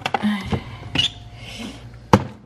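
Plastic food containers and wrapped packages being moved about on refrigerator shelves: a few sharp clicks and knocks with light rustling in between.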